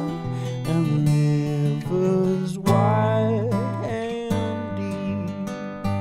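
Live acoustic folk song: an acoustic guitar strummed steadily, with a long held melody line over it.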